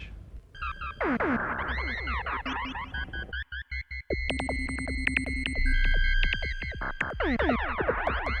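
Electronic music: synthesizer sweeps gliding up and down, steady high beeping tones and sharp clicks over a low bass. The sound cuts in and out in a quick stutter about halfway through.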